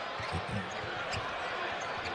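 A basketball dribbled on a hardwood court, a handful of short bounces in the first second or so, over faint arena background noise from the game broadcast.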